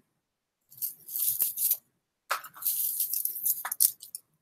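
Costume jewelry rattling and clinking as it is handled, in two bursts: a short one about a second in and a longer one through the second half.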